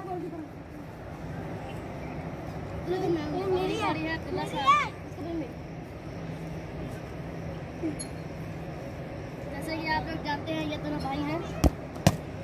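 Children's voices calling out faintly over a steady low hum, and near the end a single sharp thud of a football being kicked.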